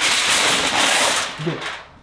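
Sheet of aluminium foil crinkling loudly as it is handled and folded. The crinkling stops about one and a half seconds in.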